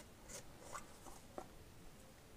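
Faint handling noise: a small plastic paint jar being moved over paper and set down, with a few soft taps and rubs.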